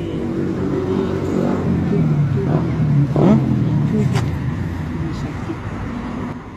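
A motor vehicle's engine passing close by on the road: a low, steady engine sound that builds over the first few seconds and then fades. A brief voice sound comes about three seconds in.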